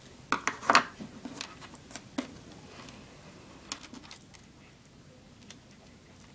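Light clicks and clatter of plastic pony beads and a pair of scissors being handled on a tabletop. A quick cluster of clicks comes about half a second in, then a few scattered single ones.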